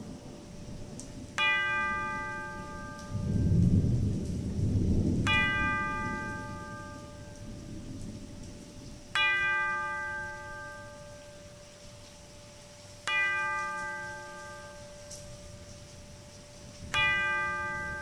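A bell tolling slowly, struck five times about four seconds apart, each stroke ringing out and fading, over steady rain. A low thunder rumble rolls in a few seconds in.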